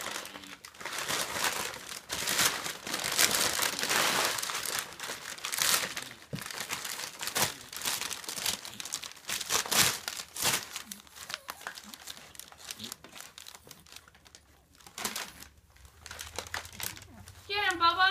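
Brown kraft packing paper crumpling and crinkling in irregular bursts as two kittens wrestle in it. The rustling is busiest and loudest for the first ten seconds, then thins out to sparser crinkles.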